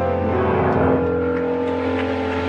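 Organ holding a steady sustained chord at the close of a piece of music.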